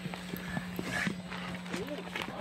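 Wrestlers moving and landing in a backyard wrestling ring: scattered short knocks and thuds, with brief snatches of voices and a steady low hum underneath.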